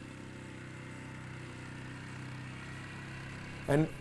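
Quad bike (ATV) engine running at a steady speed, an even, low-pitched hum.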